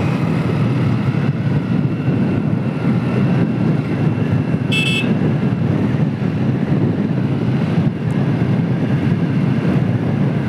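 Hero Splendor motorcycle's single-cylinder four-stroke engine running steadily under way, mixed with wind and road noise. About halfway through comes one short horn beep.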